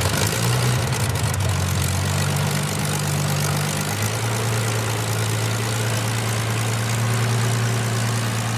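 A machine running steadily: a low hum under a broad hiss, the hum's pitch shifting slightly about four seconds in.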